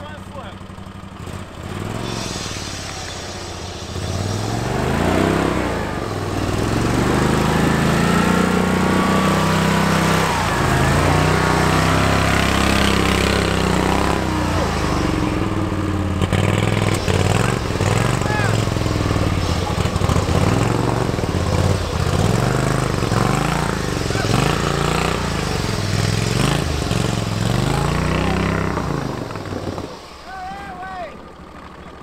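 Lifted Wheel Horse mud mower's engine revving up and down over and over as the tractor churns through deep mud and water, with the splash and wash of water under it. It starts quieter, gets much louder about four seconds in, revs in quicker waves in the second half, and drops off near the end.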